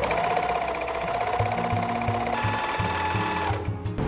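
TSM M-434D portable four-thread overlock machine (serger) stitching fabric: a steady motor whine that steps up in pitch a little past halfway, then stops shortly before the end.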